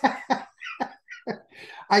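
Men laughing in a few short, breathy chuckles and exhales that tail off in quiet gaps.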